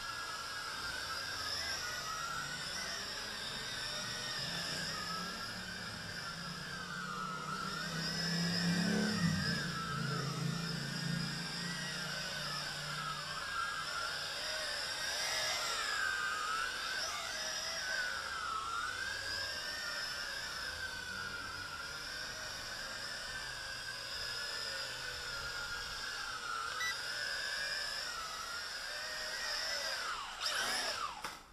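Small JJRC X6 toy quadcopter's motors and propellers whining, the pitch wavering up and down as the throttle changes in flight. A lower hum swells briefly about eight to twelve seconds in.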